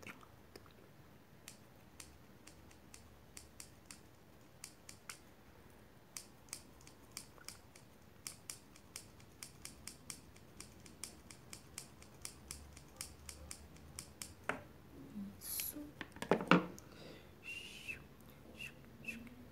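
Hair-cutting scissors snipping close to the microphone, a few isolated snips at first and then a quick run of a few snips a second. A louder rustle comes near the end.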